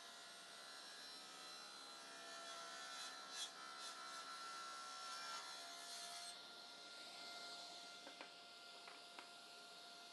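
Table saw cutting a bevelled groove in a beech block, heard very faintly: a steady thin whine with a cutting hiss that stops about six seconds in.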